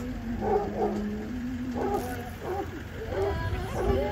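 A medium-duty parade truck's engine running at low speed as it rolls past, a steady low hum under people's voices.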